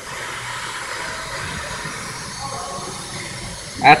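Steady hissing rub of a cloth shop rag wiping an oil pump rotor clean.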